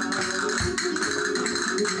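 Flamenco music: guitar with a quick run of sharp percussive clicks.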